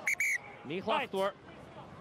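Rugby referee's whistle: one short, high-pitched blast near the start, stopping play. A man's shout follows.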